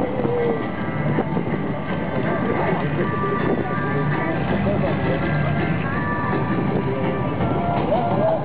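Music and indistinct voices over a steady, continuous mechanical rumble, at an even level throughout.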